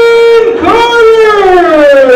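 A ring announcer's voice through a microphone, drawing out a fighter's name in long held calls: one steady held note breaks off about half a second in, and a second long note starts right after and slowly falls in pitch.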